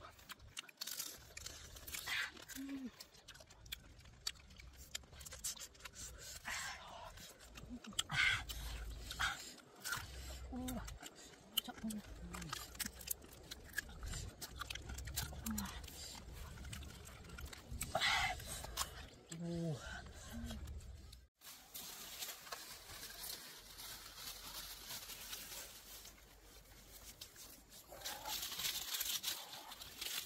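Close-miked eating sounds: chewing and sucking, cooked crab shells being cracked and pulled apart by hand, with short murmured hums. About two-thirds of the way through the sound cuts off abruptly and gives way to a steady hiss.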